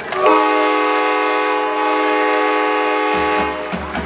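Marching band brass holding one loud sustained chord that cuts off about three and a half seconds in.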